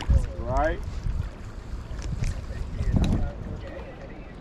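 Wind buffeting the microphone on an open river: an uneven low rumble that swells around three seconds in. A short gliding vocal sound comes about half a second in.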